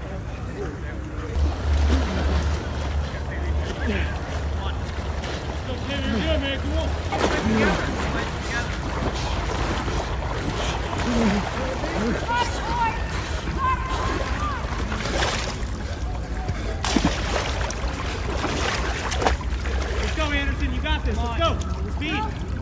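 Muddy water sloshing as a soldier crawls through a flooded trench, over a steady low rumble of wind on the microphone, with scattered distant shouts of encouragement.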